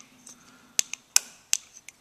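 Small four-pin tactile push buttons pressed by finger into a printed circuit board, giving three sharp clicks about a third of a second apart and a fainter one near the end, as the buttons' pins snap into their holes.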